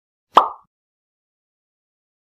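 A single short pop sound effect a third of a second in, fading out quickly.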